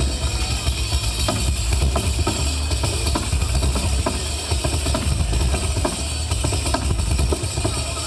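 Live amplified folk music: a tamburello frame drum is struck in a rapid run of strokes over a heavy low rumble.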